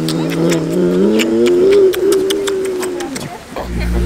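A long, drawn-out wordless vocal sound from a person, rising in pitch and then held, ending a little after three seconds in.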